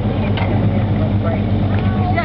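Boat's outboard motor running steadily with a low, even hum.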